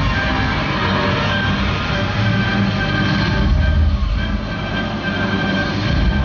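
Loud show soundtrack from outdoor loudspeakers: a deep rumbling sound effect mixed with held musical tones, swelling a little past the middle.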